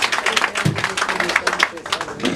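A crowd clapping hands in quick, irregular claps, mixed with voices.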